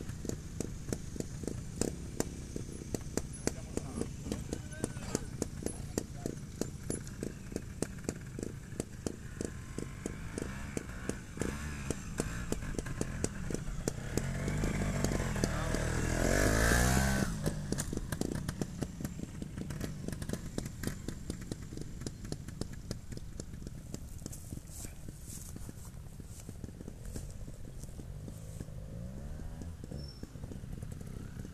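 Aprilia Climber two-stroke trials motorcycle working up a steep rocky climb at low revs, its exhaust popping rapidly. The engine revs up and is loudest as the bike passes right by about halfway through, then fades.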